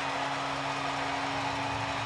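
Arena crowd cheering steadily after a goal, with a low steady hum underneath.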